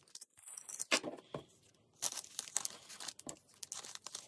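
Clear plastic sticker sleeve crinkling and rustling as paper stickers are slid into it and handled, in two irregular bursts with a brief lull between.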